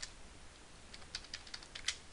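Typing on a computer keyboard: one keystroke at the start, then a quick run of about seven keystrokes from about a second in.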